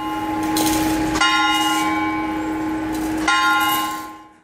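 Church bell tolling: slow single strokes, one about a second in and another near the end, each ringing on with a steady hum beneath.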